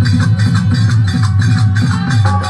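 Instrumental qawwali accompaniment: a harmonium playing sustained reedy chords over fast, steady hand-drumming on dholak drums.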